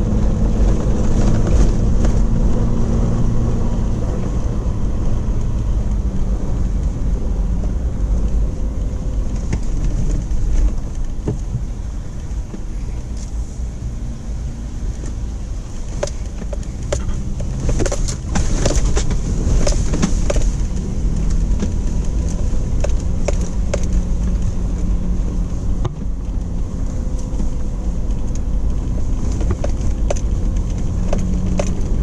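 Off-road vehicle driving slowly along a sandy dirt track, its engine running steadily with tyre and road noise, heard from inside the cabin. About halfway through comes a run of sharp knocks and rattles.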